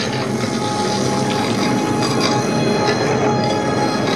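The projection show's soundtrack playing loud over outdoor speakers: a dense, steady, dissonant wash of many sustained high tones layered over a thick low layer, without a clear beat. It sits between stretches of dark orchestral show music.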